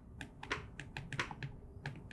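Stylus tips tapping and scratching on tablet glass as two people handwrite answers: a quick, irregular run of light clicks.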